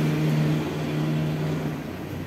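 A steady motor hum at a constant pitch, fading out near the end.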